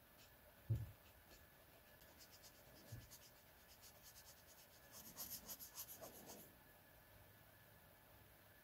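Felt-tip marker scratching on sketchbook paper in short rapid strokes while colouring. The strokes are faint at first and come in a louder quick run about five to six and a half seconds in, with a soft low thump about a second in.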